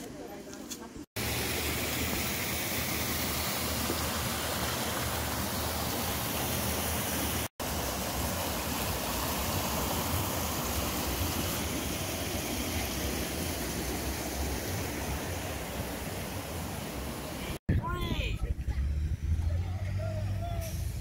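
Creek water rushing over rock rapids in a narrow channel: a loud, steady rush that starts suddenly about a second in. Near the end it cuts off abruptly and gives way to the low hum of vehicle engines.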